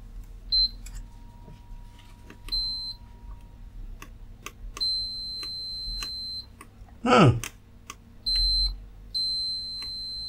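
Digital multimeter continuity buzzer beeping as the probe tips touch pins on a motherboard: a steady high tone in five beeps of uneven length, the longest about a second and a half, with light clicks of the probes on metal. Each beep signals a closed circuit, here a connection from a MOSFET gate trace to a pin of the controller chip.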